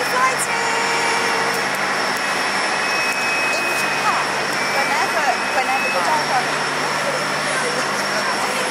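Steady jet whine and rush from an Airbus A350-900 on the apron during pushback, a constant high whine over a lower hum.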